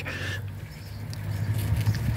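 A steady low rumble, with a brief soft hiss near the start and a few faint clicks.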